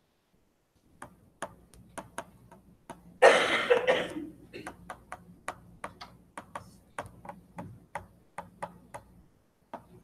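A stylus tapping and clicking on a pen tablet or screen during handwriting: a series of sharp, irregular clicks, about one or two a second. About three seconds in comes one loud, brief rush of noise.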